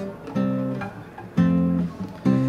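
Nylon-string classical guitar strummed twice, about a second apart; each chord rings out and fades before the next.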